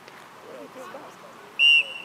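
Soccer referee's whistle: one short, loud blast about one and a half seconds in, its tone trailing off faintly afterwards.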